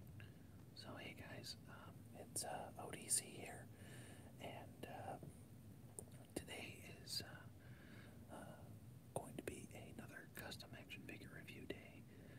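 Quiet whispered speech from a man.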